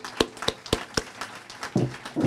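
Hands clapping right by a podium microphone: sharp, evenly spaced claps about four a second, loudest in the first second and softer after, with fainter scattered claps behind them.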